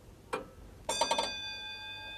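Clock bell sound effect: a single struck ring, then a quick flurry of strikes about a second in that rings on with several clear tones, fading slowly.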